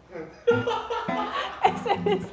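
Laughter beginning about half a second in, in short chuckles, with music faintly underneath.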